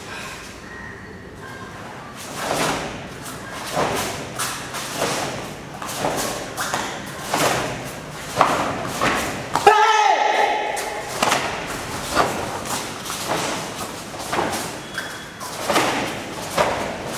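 A karate kata performed barefoot on foam mats: a quick string of thuds and snaps as feet stamp and the cotton gi cracks with each strike. About ten seconds in, one short loud shout, a kiai.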